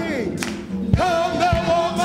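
Live gospel music: voices singing long, wavering notes over the band, with drum hits at about one a half-second.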